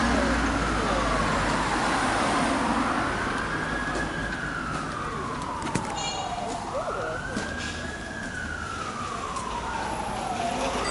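Emergency vehicle siren wailing, its pitch rising and falling slowly, about four seconds per cycle, over street noise.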